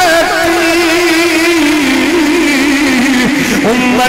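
A man's voice singing a long, wavering held note in a melismatic chanted style, amplified through a microphone and loudspeakers. The note dips lower near the end.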